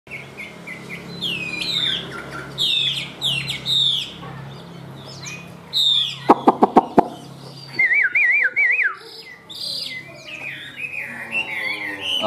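Hwamei (Chinese hwamei, a laughingthrush) singing a varied song of rising and falling whistled phrases, with a quick wavering trill about eight seconds in. A quick run of five sharp clicks just before the seven-second mark is the loudest sound.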